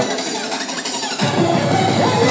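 Makina electronic dance music played loud on a club sound system during a DJ mix. The bass and kick drum drop out, then the fast beat comes back in a little over a second in.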